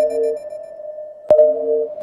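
Electronic beep tones: one steady tone held throughout, with a lower two-note tone that comes in briefly after a click at the start and again after a second click about a second and a half in.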